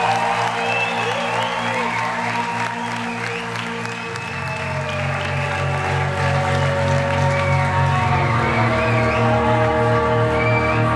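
A live indie rock band's song intro: a steady pulsing bass note that changes pitch about four seconds in and again near the end, under long sustained higher notes, with the audience applauding and cheering over it.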